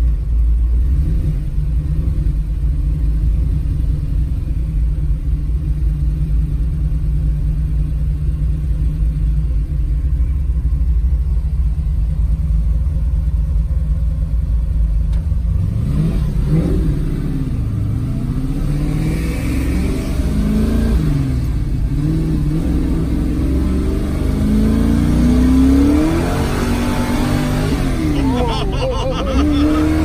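1968 Camaro engine heard from inside the cabin, running at a steady low drone while cruising. About halfway through it accelerates hard: its pitch climbs and falls back several times as the car pulls up through the gears.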